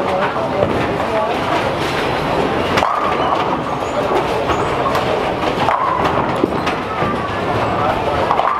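Bowling alley din: bowling balls rolling down the lanes with a steady rumble, with a few sharp crashes of pins being struck, about 3 s in and near 6 s, and voices chattering in the background.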